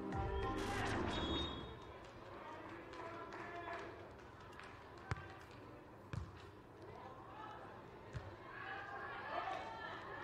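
A beach volleyball struck by players' hands in a rally: three short, sharp smacks, the first about five seconds in, then two more about one and two seconds later, over faint background music.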